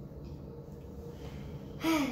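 Quiet room tone, then near the end a child's short voiced sound that falls in pitch.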